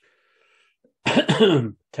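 A man clearing his throat once, about a second in, lasting under a second.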